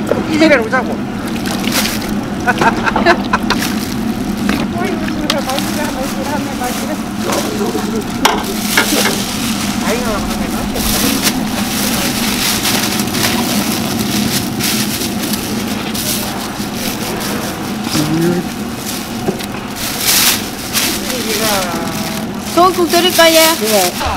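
Ongoing Korean conversation over a steady hiss from the burners under large steel soup pots, with a metal ladle knocking and clinking against the pots several times, loudest near the end.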